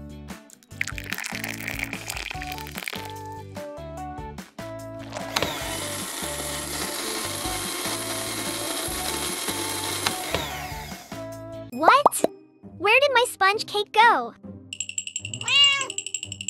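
A miniature electric hand mixer runs for about six seconds, starting about five seconds in, beating chocolate, butter and cream, over cheerful background music. Near the end, cartoon sound effects with swooping, rising and falling pitches take over.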